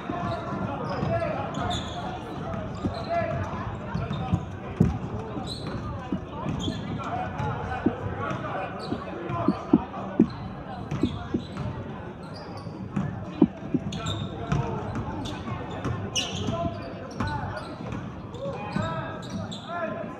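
A basketball bouncing on a hardwood gym floor, in irregular knocks, with short high sneaker squeaks as players cut. Under it runs a steady murmur of indistinct crowd voices, echoing in the large gym.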